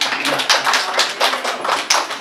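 A small group of children and adults applauding in a small room: a quick, uneven patter of hand claps.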